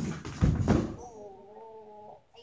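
Thumps and scuffs of a child's body moving on a carpeted floor, loudest in the first second, followed by a drawn-out pitched whine lasting about a second.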